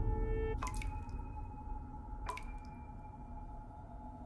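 Two water-drip plinks about a second and a half apart, each ringing on briefly, over a low rumbling drone that fades down.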